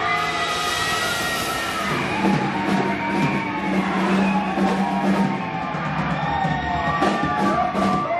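Live rock band playing: electric guitar, bass guitar and drums, with long sliding, held notes over a sustained low bass note.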